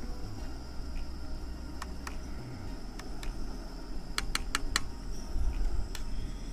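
Metal spoon clinking against an aluminium cooking pot while stirring food: a few scattered clinks, then four quick ones about four seconds in, over a steady low rumble.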